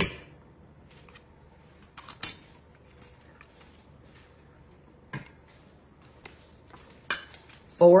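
Kitchen utensils knocking and scraping against a stainless steel mixing bowl as a measuring cup of sour cream is scooped out: a few scattered clinks, the loudest about two seconds in with a brief metallic ring.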